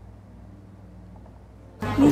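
Faint, steady low hum with no clear events. Just before the end it cuts to louder room sound as a woman starts to speak.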